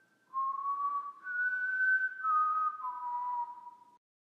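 A slow whistled tune: four held notes in a single clear line, the second stepping up and the last two stepping back down to end lowest, fading out at the end.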